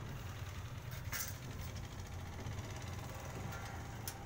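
A steady low mechanical hum, like a motor or engine running, with a brief click about a second in.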